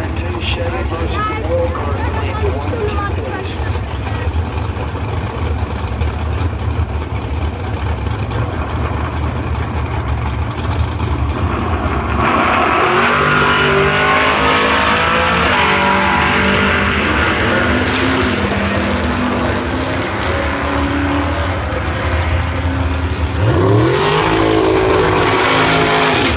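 Drag racing cars' engines rumbling at the strip, then about twelve seconds in a pair launching at full throttle, their loud engine notes changing pitch in steps as they run down the track. About two seconds before the end, an engine revs up with a sharply rising pitch.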